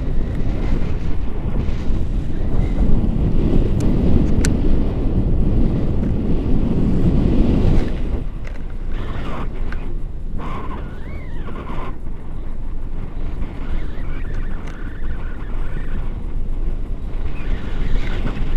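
Wind buffeting the microphone of a camera on a selfie stick during a tandem paragliding flight, a loud low rumble that eases about eight seconds in.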